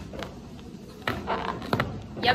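A few soft taps and rubbing sounds from a rubber balloon being handled close to the microphone, the clearest about a second in and near the end, over a low room hum.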